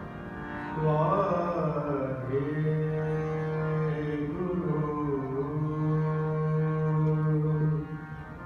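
Male kirtan singer holding long, ornamented sung notes in Raag Yaman over the steady sound of hand-pumped harmoniums. The voice comes in about a second in, bends between notes twice, and stops just before the end, leaving the harmonium.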